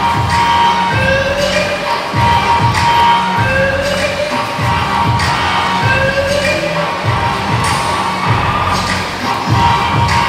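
Backing music for a roller-skating routine, with a steady beat and a short melodic figure that repeats about every two and a half seconds, under an audience cheering and children shouting.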